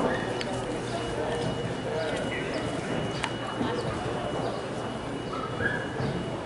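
A horse's hoofbeats as it canters across a grass arena, under a steady murmur of voices.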